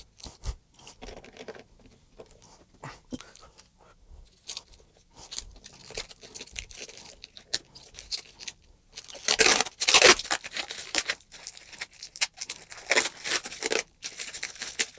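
Thin protective plastic film being peeled and ripped off a guitar pickguard, crackling and crinkling irregularly. It tears loudest about nine to ten seconds in and again near the end.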